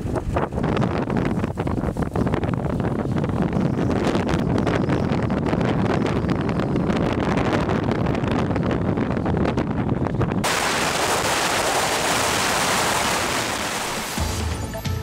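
Blizzard wind buffeting the microphone, a dense gusting rush. About ten seconds in it changes abruptly to a steady, bright hiss.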